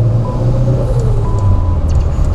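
Turbocharged small pushrod car engine running steadily at about 2,300 rpm, heard from inside the cabin.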